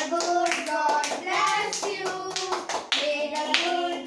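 Several people clapping steadily in time, about three claps a second, along with group singing of a birthday song.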